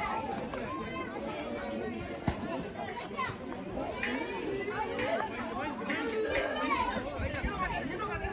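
Many people's voices talking and calling over one another, with a single sharp knock a little over two seconds in.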